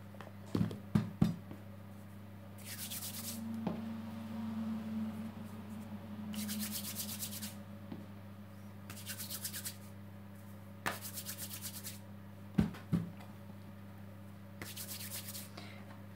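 Hands rolling small pieces of potato dough against a flour-dusted wooden pastry board to shape nudli: a dry rubbing in spells of about a second, several times over. A few sharp knocks on the board break in near the start and again about two-thirds of the way through.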